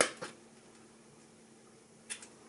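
Small hand pliers clicking shut on wire: one sharp click with a smaller second click about a quarter second after.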